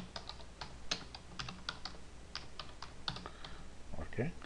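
Typing on a computer keyboard: a run of irregular key clicks, several a second.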